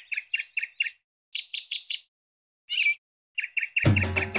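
Small bird chirping in quick runs of short, high chirps, about six a second, with brief silent gaps between runs. Music with percussion comes in right at the end.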